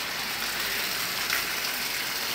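Water spraying onto leafy foliage: a steady hiss and patter of water on leaves, as when plants are hosed down to wet and cool them.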